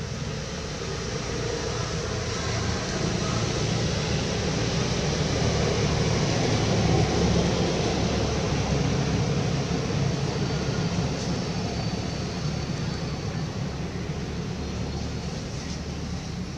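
Steady low rumbling noise that swells to a peak about seven seconds in and then eases off.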